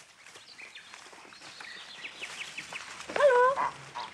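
A run of quick, high, falling chirps like a small bird calling, about six a second, over a quiet background. Near the end a loud, short, high-pitched call cuts in.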